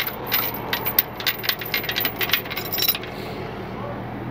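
Quick, irregular metallic clicking and clinking for about three seconds, then it stops: the metal fittings of a tow truck's wheel lift being handled as the car's front wheel is freed.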